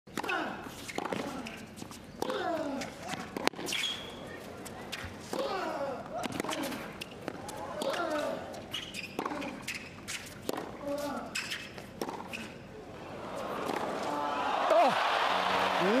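Tennis rally: racket strikes on the ball about every second or so, each met by a player's grunt. Near the end the crowd cheers, the noise swelling as the point is won.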